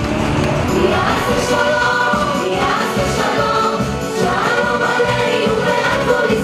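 Music with a group of voices singing together; the singing comes in about a second in over the accompaniment.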